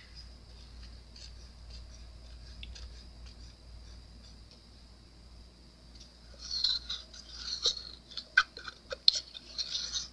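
A stir stick scraping thick epoxy resin off the inside of a mixing cup. The scrapes are faint at first, then louder with several sharp clicks over the last four seconds.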